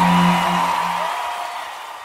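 Closing held chord of a Spanish-language romantic ballad fading out; the low bass note drops away about a second in and the rest of the music dies away.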